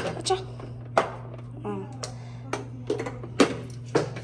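A small drip coffee maker's plastic lid and glass carafe being handled: a handful of sharp clicks and knocks spread over a few seconds, with a low steady hum underneath.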